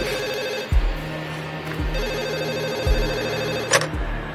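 Landline telephone ringing in two long rings with a short pause between them, over low thuds about once a second. The ringing stops near the end with a short swoosh, as the handset is picked up.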